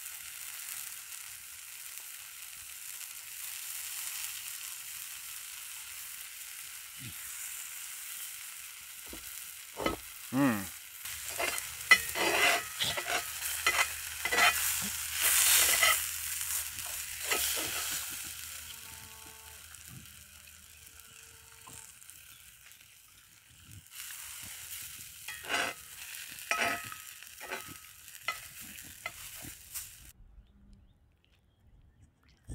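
Pancake batter sizzling steadily in a cast iron skillet. About ten seconds in, a metal spatula starts scraping and knocking against the pan as the pancake is worked loose and turned, with more scraping and clinks near the end.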